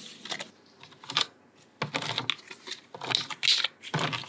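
Plastic food-dehydrator trays clicking and clattering as they are lifted and handled, mixed with the dry crackle of dehydrated quail being picked off the mesh. The clicks come in irregular clusters.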